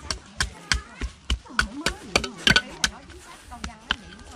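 Small hand digging tool chopping repeatedly into soil, about three short sharp strikes a second.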